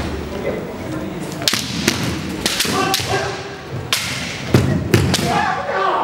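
Kendo exchange: bamboo shinai clacking against each other and on armour, with the thud of stamping bare feet on a wooden floor, a run of sharp cracks from about a second and a half in. Fencers' kiai shouts come with the strikes, a long one near the end.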